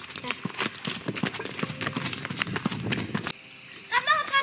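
Quick, irregular footsteps of people walking or running on a hard path, a dense patter of clicks that stops abruptly about three seconds in.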